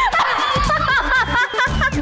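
A woman laughing heartily in a quick run of short 'ha' bursts, coming faster in the second half, over background music with a steady beat.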